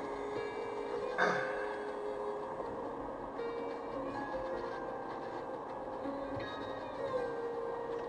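Music playing on the car radio, heard inside the car's cabin over the low hum of the car driving.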